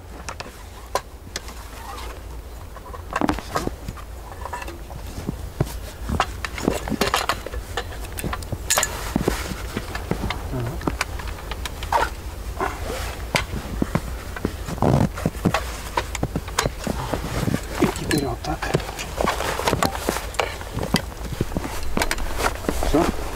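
Folding camp cot being taken down: its aluminium frame tubes and hinges click and knock repeatedly as it folds, with the fabric rustling, over a steady low rumble.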